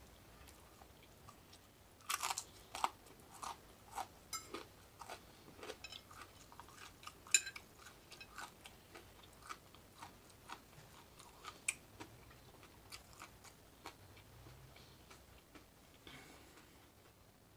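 A person chewing crispy bacon close to the microphone, with irregular crunching bites. The crunches come thickest about two seconds in, then grow sparser toward the end.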